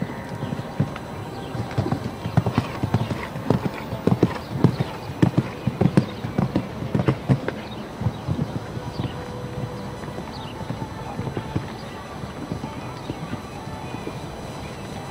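Hoofbeats of a show jumper cantering on sand footing, in quick clusters of beats that are loudest in the first half and fainter after about eight seconds.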